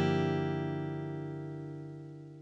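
Final chord of the outro music ringing out and slowly fading away.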